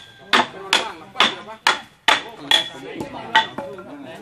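A hammer striking the wooden frame of a large wooden swing as it is knocked apart. The blows come about two a second, eight in all, each ringing briefly, and stop about three and a half seconds in.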